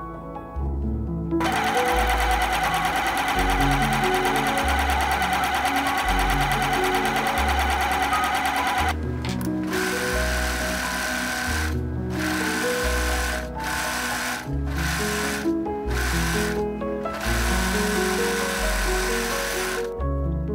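Sewing machines running over soft background music: about a second and a half in, a machine starts and stitches steadily for about seven seconds. Then an overlocker (serger) runs in a string of short stitching runs, stopping and starting several times.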